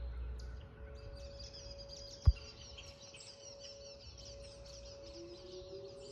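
Distant Whelen outdoor tornado warning sirens holding a steady tone, with another siren starting up and rising in pitch near the end. Birds chirp throughout, and one sharp knock, the loudest sound, comes about two seconds in.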